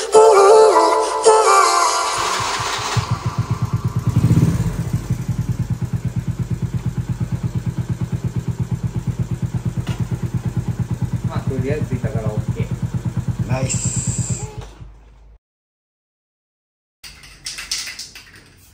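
Honda Little Cub's 49 cc single-cylinder four-stroke engine starting about three seconds in and swelling once. It then idles with an even, fast putter and stops near the end. Background music fades out at the start.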